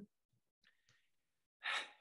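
A man's single short, audible breath, a sigh, about a second and a half in, after a near-silent pause.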